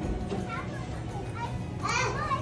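A toddler babbling in a few short high-pitched sounds, the loudest near the end, over background music.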